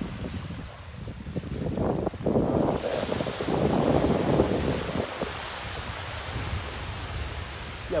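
Small Caribbean waves breaking and washing up the sand at the water's edge, with wind buffeting the microphone. The surf swells louder about two seconds in and eases off after about five seconds.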